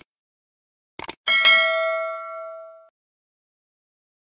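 Two quick mouse clicks about a second in, then a single bell ding that rings and fades over about a second and a half: the sound effect of an animated YouTube subscribe button being clicked and its notification bell.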